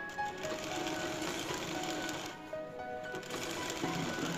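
Sewing machine running as it stitches a folded lungi hem. It runs for about two seconds, stops briefly, then runs again, with background music underneath.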